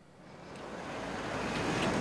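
Steady outdoor street background noise, an even rushing hiss, swelling up from near silence over the two seconds.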